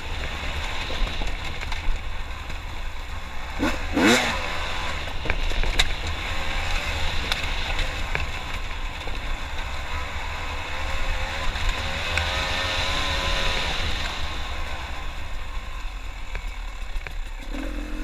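Beta 300RR two-stroke dirt bike engine running under load as the bike climbs a rocky trail, with heavy low wind rumble on the helmet-mounted microphone. There is a brief loud burst about four seconds in, and the engine pitch rises and wavers a little past the middle.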